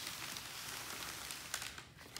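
Wet parchment (baking) paper being slid and dragged across a paper-covered tabletop: a steady soft rustling hiss, with a few small crinkles near the end.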